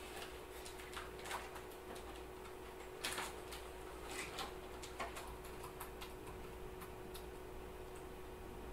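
Laptop keyboard keys tapped in scattered, irregular clicks, over a steady faint hum.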